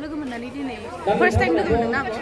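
Women talking close to the microphone, with other voices chattering behind; the talk grows fuller about a second in.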